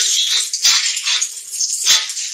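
Chicken chapli kababs sizzling as they shallow-fry in oil on a flat tawa, with a couple of sharp clicks of a metal spatula against the tawa, the last near the end.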